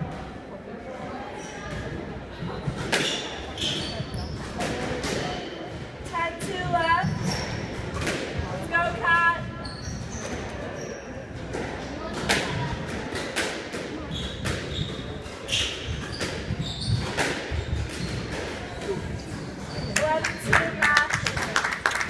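Squash ball being struck by rackets and smacking off the walls of a squash court, sharp knocks that ring in the enclosed court, mixed with short squeaks of shoes on the hardwood floor.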